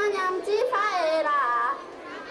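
A young woman singing a folk melody unaccompanied, in high, wavering, ornamented phrases that pause near the end.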